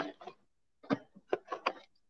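A few short knocks and clicks of a phone camera being handled while a clip-on magnifying lens is taken off: one about a second in, then three or four in quick succession.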